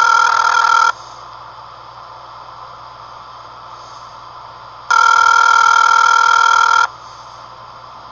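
Telephone ringback tone on a call line: two rings about two seconds each, four seconds apart, as the call rings through waiting to be answered. A low steady hum runs underneath.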